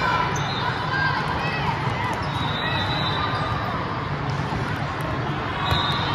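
Indoor volleyball rally: the ball is struck by hands and forearms and sneakers squeak on the court, over a steady babble of voices echoing in a large hall.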